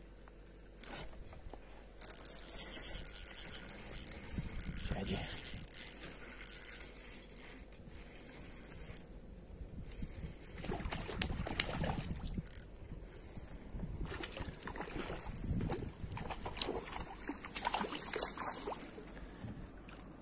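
Spinning reel buzzing in several short, high-pitched bursts for a few seconds while a hooked pike is played. This is followed by irregular splashing and rustling as the small pike is brought in, thrashing at the surface by the reeds.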